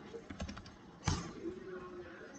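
Typing on a computer keyboard: a few soft keystrokes, with the loudest one about a second in.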